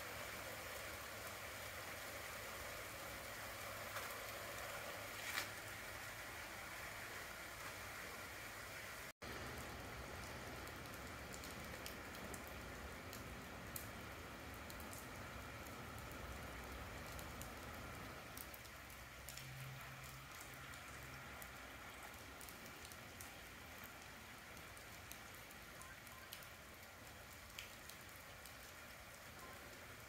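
Faint, steady light rain with scattered small drop ticks.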